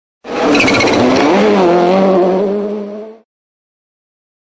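A car sound effect over the closing logo: a loud engine note with a high tyre-squeal-like screech at the start, its pitch wavering briefly and then held steady, cutting off abruptly after about three seconds.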